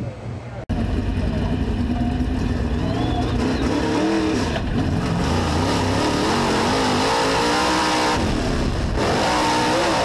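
Dirt-track race car engine heard from inside the car at racing speed, its pitch rising and falling as it revs; it cuts in abruptly a little under a second in.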